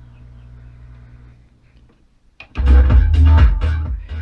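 Gradiente STR 800 stereo receiver: a faint low hum from the speakers, then a click as the source selector is turned, and loud bass-heavy music comes in through the speakers about two and a half seconds in.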